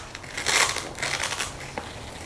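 A Velcro hook-and-loop strap being pried and peeled apart from its mating Velcro: a crackly rasp, loudest about half a second in, then a fainter, drawn-out tearing as the tight strap is worked loose.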